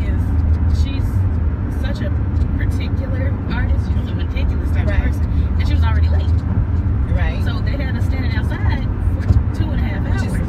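Steady low rumble of road and engine noise inside a moving car's cabin, with women's voices talking on and off over it.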